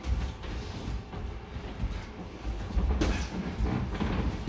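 Boxers' footwork thudding and shuffling on the ring canvas during sparring, with a sharper hit about three seconds in.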